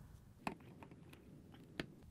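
A few faint clicks and ticks of a flathead screwdriver prying a rubber motor-to-sump seal out of a dishwasher's plastic sump, the loudest near the end.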